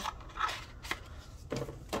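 A metal nail stamping plate and its cardboard sleeve being handled, giving a few faint clicks and short rustles as the plate slides against the card.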